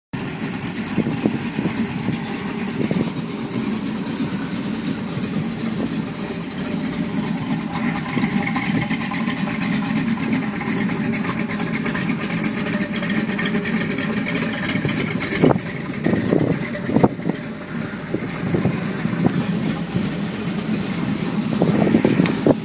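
1929 Ford Model A roadster pickup's four-cylinder engine idling steadily, with a few sharp knocks in the second half.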